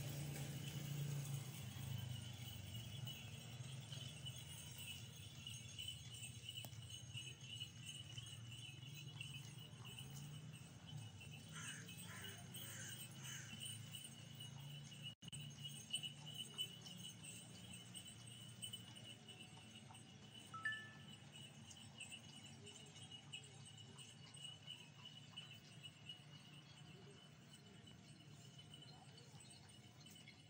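Faint outdoor ambience of an open paved square: a low steady rumble under a thin, steady high-pitched tone, with a few short chirps a little before the middle and one brief chirp about three-quarters of the way in.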